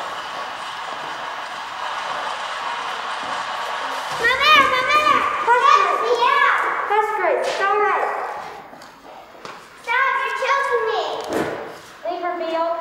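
A steady hum of noise, then high children's voices in short rising-and-falling phrases from about four seconds in, pausing and returning near the end, in a large hall.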